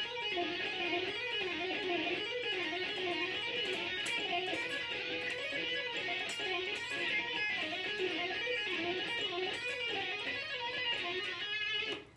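Electric guitar playing a fast, smooth legato run of hammer-ons and pull-offs on the B and high E strings, a whole step then a half step per string, with slides linking the positions. The notes flow without a break, the pitch rising and falling over and over in a repeating wave.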